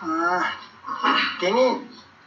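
Only speech: an elderly man talking, his voice rising and falling in three short bursts.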